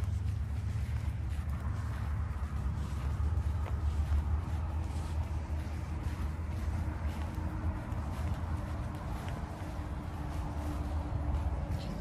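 Losi Super Rock Rey 2.0 RC truck's brushless electric motor whining faintly and steadily as the truck is driven slowly back across grass, under a steady low rumble.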